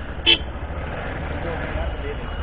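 Steady low rumble of a vehicle moving slowly, with one short horn toot about a third of a second in.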